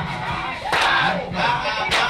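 A crowd of young men shouting and hyping together around a dancer, with a sharp hit recurring about once a second.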